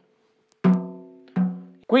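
Snare drum head tapped twice with the snare wires off, each tap ringing with a clear pitch and fading away; the second is softer. The taps are made near a tension rod so that a clip-on drum tuner can read the head's pitch there.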